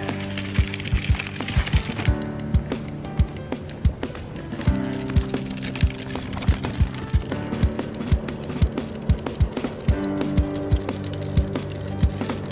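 Background music: a steady beat of sharp hits over held chords that change every few seconds.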